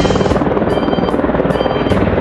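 Helicopter in flight, its rotor blades beating in a rapid, steady chop.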